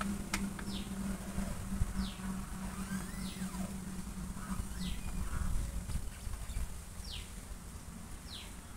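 A bird calling repeatedly in short, falling whistled notes, one every second or two, over a steady low hum, with a couple of sharp clicks near the start.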